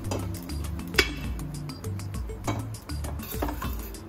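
Background music with a steady beat, over which an aluminium pressure cooker clinks sharply against the stove about a second in, followed by a couple of fainter metallic knocks as it is handled.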